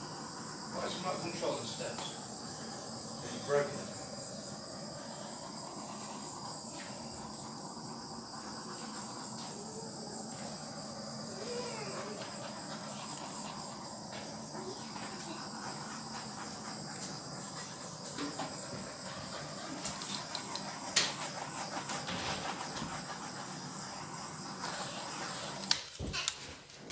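Handheld blowtorch flame hissing steadily as it is passed over wet acrylic pour paint, with a few light clicks. It cuts out just before the end.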